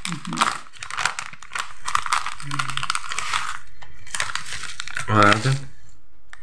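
Thin plastic snack packaging crinkling as it is handled, a long run of crackles with a brief pause near the end.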